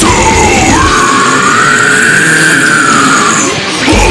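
Loud deathcore music with harsh, growled vocals. About a second in the low end drops out, leaving one long held high note that rises and falls, and the full band comes back in right at the end.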